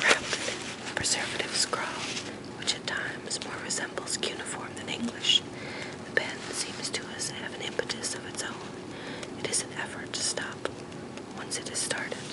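A person whispering, reading a book aloud in a soft ASMR whisper with sharp sibilant hisses.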